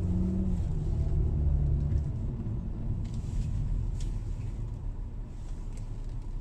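Car engine and tyre noise heard from inside the moving car's cabin: a low engine hum for about two seconds that then fades to a quieter rumble as the car slows.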